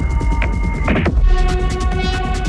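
Melodic electronic music: deep, steady sub-bass under sustained synth chords, with a few sparse drum hits; the chord shifts about a second in.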